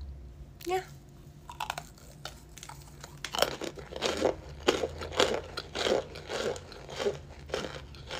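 A person biting and chewing a chunk of cornstarch, crunching about three times a second from about three seconds in.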